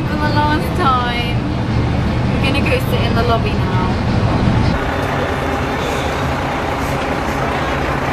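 A bus engine running steadily, heard from inside the cabin, with voices over it in the first half. About two-thirds of the way in, the engine hum gives way to a more even outdoor traffic noise.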